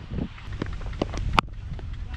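Wind buffeting a helmet-mounted action camera's microphone as a steady low rumble, with a handful of short sharp taps, the loudest a little past the middle.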